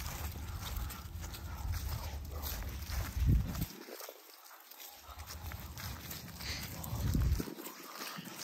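Wind buffeting a phone microphone in gusts, loudest just after three seconds and again near seven, dropping away abruptly twice. Under it, footsteps of people and dogs rustling through dry grass and leaves.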